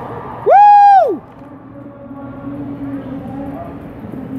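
A loud whoop from one person close by: a single cry that rises, holds for about half a second and falls away, about half a second in, over steady background noise.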